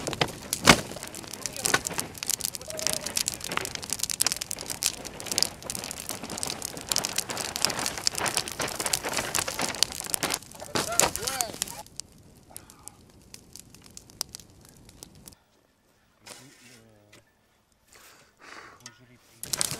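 Fire of burning painted canvases crackling and popping densely, then much quieter after about twelve seconds, with a brief cut to silence near the end.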